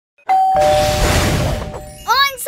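Two-note chime, a higher note followed by a lower one, both held, over a rushing noise that swells and fades away over about a second and a half: a cartoon sound-effect sting as the logo comes up.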